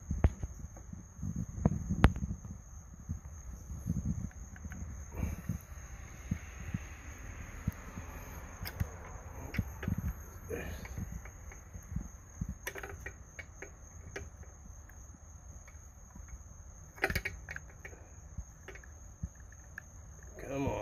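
Close-up hand-work noise with scattered light clicks and knocks as a screw on an outboard carburetor linkage is tightened; the sharpest knock comes about two seconds in. A thin, steady high-pitched tone runs underneath.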